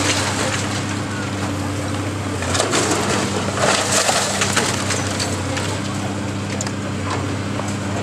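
Brick masonry crumbling and crashing down as a long-reach demolition excavator pulls the building apart, with bursts of cracking and clatter about two and a half and four seconds in. A diesel engine drones steadily underneath.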